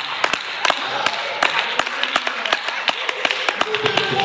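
Hand claps in church worship: many sharp, irregular claps, several a second, over a haze of voices.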